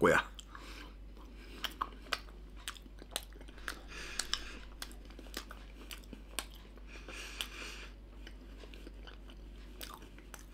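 A person chewing a mouthful of oven-baked potato balls, with many small irregular clicks and smacks of the mouth and two soft breathy stretches in the middle.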